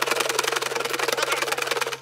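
A clear jar packed with folded paper notes being shaken hard by hand, giving a fast, loud, continuous rattle of the paper slips knocking against the jar walls and each other.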